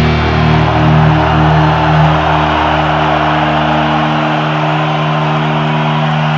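Live metal band's electric guitars and bass holding a closing chord that rings on; the pulsing in the chord stops about two and a half seconds in and the lowest notes drop away about four seconds in. A large crowd cheers under it.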